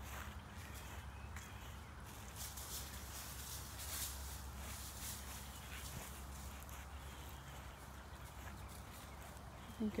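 Faint outdoor ambience with a low steady rumble and scattered soft clicks and rustles: footsteps on grass as the person filming walks backward.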